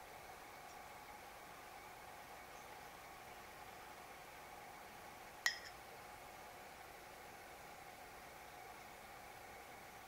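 Faint steady hum of room tone, with a single light clink a little past the middle as metal tweezers set a penny into a shallow glass dish.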